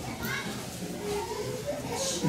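Faint background voices and chatter from people in the room, with no main speaker on the microphone.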